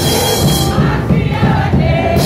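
Live gospel worship music: a congregation singing along with a band led by a singer on a microphone. About a second in, the bright high end of the band drops away, leaving mostly the many voices singing.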